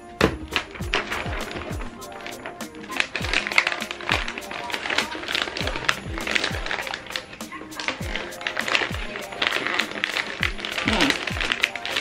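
Hip-hop style background music with a deep kick-drum beat and crisp ticks over it, along with the crinkle of foil-printed wrapping paper being folded around a box.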